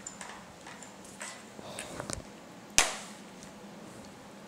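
Handling noises of a plastic and metal tablet mount: small clicks and rustles, then one sharp knock with a brief ring just under three seconds in, as the iPad is taken off the mount and set down on the hard countertop.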